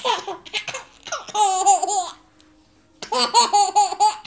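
A baby laughing hard in two long high-pitched bouts, about a second in and again near the end, with shorter laughs at the start.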